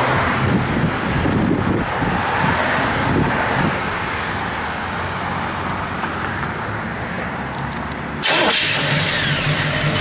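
1966 Chevrolet Malibu's 327 V8 idling through its dual exhaust. About eight seconds in the sound suddenly becomes louder and fuller as the open engine bay comes close.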